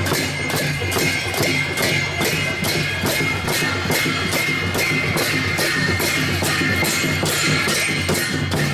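Sakela dhol barrel drums beaten in a steady, even rhythm together with small hand cymbals (jhyamta) that ring on.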